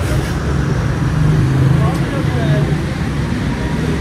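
Busy street ambience: a steady low motor hum with indistinct voices in the background.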